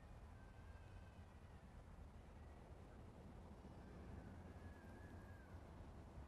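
Near silence: faint outdoor ambience with a low steady rumble, and two faint thin high calls, one near the start and one about four and a half seconds in.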